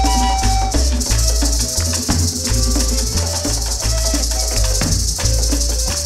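Traditional Colombian cumbia played instrumentally on gaitas (cane flutes) with hand drums and maracas: a held, wavering flute melody over a steady pulsing drum beat and continuous maraca shaking.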